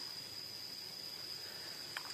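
Crickets or similar insects trilling steadily in the field, a faint unbroken high-pitched tone over a soft outdoor hiss.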